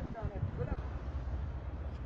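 A person's voice for a second or less near the start, a few short sounds, over a steady low rumble of outdoor noise picked up by a phone microphone.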